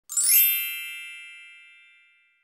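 A bright chime sound effect struck once: it opens with a quick sparkling shimmer, then rings on several pitches and fades away over about two seconds.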